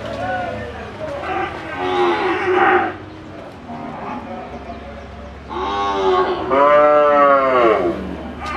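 Red Brahman heifers mooing: a shorter call about two seconds in, then a longer, louder one from about five and a half seconds whose pitch rises and falls.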